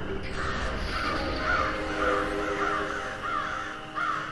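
Crows cawing in a quick run, about two or three caws a second, over a steady low drone of several held tones.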